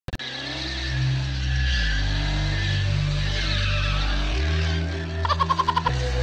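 A car doing donuts: the engine held at high revs with tyres squealing and skidding on pavement, the engine note stepping to a new pitch twice. Near the end comes a quick stuttering run of about a dozen pulses. It is heard as a recording played back through a screen's speaker.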